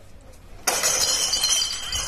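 Sudden crash of breaking glass less than a second in, the shattering and tinkling going on for over a second.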